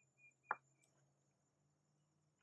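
Near silence, with one short click about half a second in.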